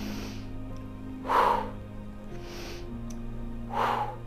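Soft background music of sustained chords, with a woman's audible deep breaths in and out over it: four breaths, the second and fourth louder.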